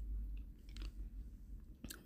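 Faint steady low hum with a few soft, short clicks scattered through it.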